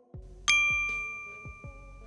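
A single bright chime sound effect for a title reveal, struck about half a second in and ringing as it slowly fades. It plays over quiet background music with an even low beat.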